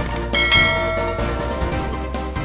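Background music with a bright bell-like chime that rings out about a third of a second in and fades over the next second, a notification-bell sound effect.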